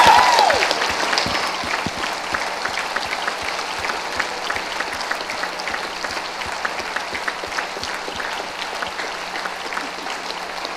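Congregation clapping and applauding, loudest at first and slowly fading.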